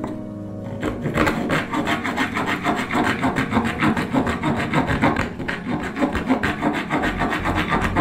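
A thin metal blade hand-sawing into a pine strip, in quick rhythmic back-and-forth strokes that start about a second in.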